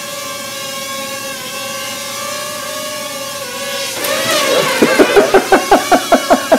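Ryze Tello mini quadcopter hovering, its propellers giving a steady high hum whose pitch wavers slightly. About four seconds in, a louder rapid run of sharp knocks or pulses, about six a second, comes over it.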